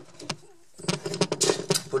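Handling noise: a couple of sharp clicks, then, from about a second in, a dense run of quick clicks and light rattling as objects are moved about by hand.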